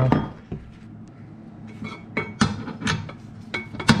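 Irregular metallic clinks and knocks of steel sockets and a socket bar being handled against a steel bench vise and an aluminium motorcycle swingarm while it is set up to press out the worn swingarm bearings. About half a dozen sharp clinks, the loudest near the end.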